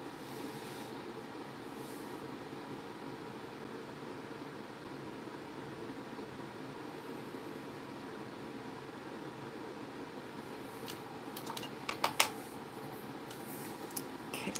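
Steady low background hum, then a few sharp little clicks near the end as small painting tools are handled and set down on the table.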